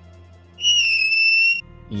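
A loud, high whistling tone held for about a second, starting about half a second in, over a low steady hum.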